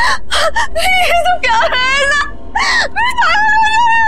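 A woman wailing and sobbing in distress. Long high cries are broken by short gasping sobs, with one rising cry about halfway through.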